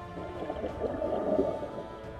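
A scuba diver's regulator exhaling underwater: a rough gurgle of bubbles lasting about a second and a half, over background music.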